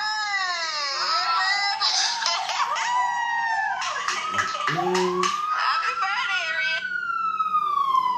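A siren-like wail sweeping up and down in pitch several times, then a long slow fall near the end.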